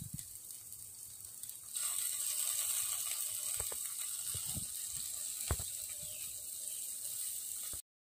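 Marinated steaks and corn sizzling on an electric tabletop grill: a steady high hiss with a few sharp pops of spitting fat, louder from about two seconds in. It cuts off suddenly near the end.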